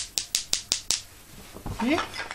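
Two wooden xylophone mallets clacking, about six sharp, dry taps in the first second with no ringing tone.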